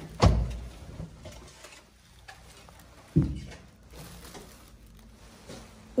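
Room door opened by its handle: a sharp clunk of the latch and door about a quarter second in, then a dull thump about three seconds in.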